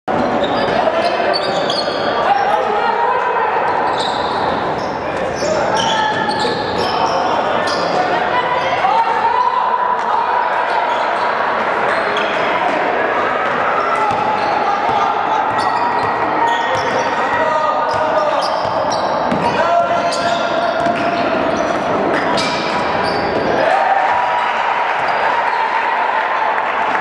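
Basketball game on a hardwood court: the ball bouncing repeatedly as players dribble, over continuous indistinct shouting and talk from players and spectators. Everything echoes in a large gym.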